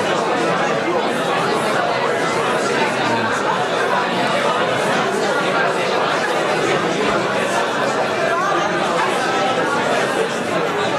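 Many people talking at once in small groups, a steady overlapping babble of voices with no single speaker standing out.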